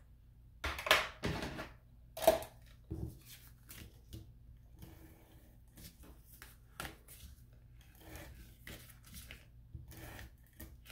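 Short knocks, taps and scrapes of cardstock and craft tools being handled on a craft mat, the loudest about a second and two seconds in, followed near the end by a longer scratchy rasp as a tape runner is drawn across cardstock.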